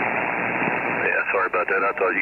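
Radio receiver on 27.375 MHz opening up with a sudden rush of static hiss as another station transmits, and a faint, garbled voice coming through the noise about a second in.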